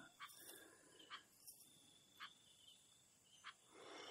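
Near silence: faint room tone with a few soft, isolated clicks.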